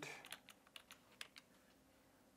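Computer keyboard typing: a handful of faint, scattered key clicks in the first second and a half, then near silence.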